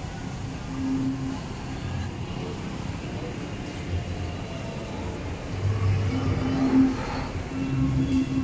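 Street traffic: engines of passing road vehicles running by, louder about two-thirds of the way through.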